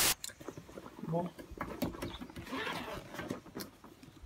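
A short, loud burst of noise right at the start, then rustling and small clicks as a fabric backpack is handled and opened.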